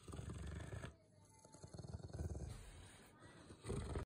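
Rottweiler growling low and quietly, a pulsing rumble in two stretches, still grumbling after being told to stop. A short, louder sound comes near the end.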